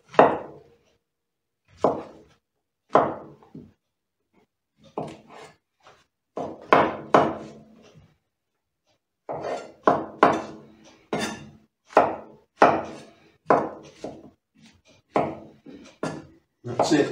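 Chef's knife cutting a white mushroom into slices and then cubes on a cutting board: a run of irregular knocks as the blade hits the board, with brief pauses about four and eight seconds in.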